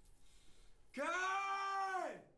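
A man's loud, anguished wail. It starts about a second in, holds one high pitch, and begins to drop just as it ends.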